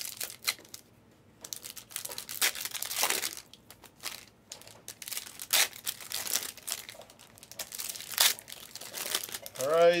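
Plastic and foil card-pack wrappers crinkling and tearing in irregular bursts as trading-card packs are handled and opened.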